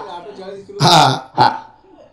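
A man's voice through a microphone: a short spoken phrase about a second in, then one brief syllable, with pauses either side.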